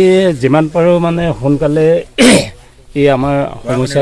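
A man speaking in short phrases, broken about two seconds in by one loud, harsh cough, after which he goes on talking.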